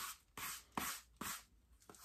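A lint brush swept in short, quick strokes across the fabric-like top of a flip-flop sole: about three faint brushing swishes in a row.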